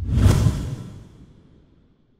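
Intro logo sound effect: a whoosh with a deep low rumble, swelling just after the start and fading away by about a second and a half in.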